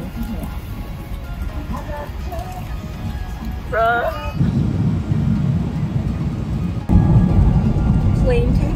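Steady low rumble of an airliner cabin in flight, with music and a short voice about four seconds in. The rumble steps up louder about four and a half seconds in and again about seven seconds in.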